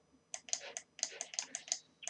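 Typing on a computer keyboard: an irregular run of quick key clicks starting about a third of a second in.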